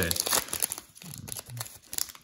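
Foil trading-card pack wrapper crinkling and tearing as it is pulled open, a busy run of short crackles.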